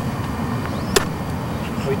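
Steady low outdoor background rumble, with one sharp click about halfway through.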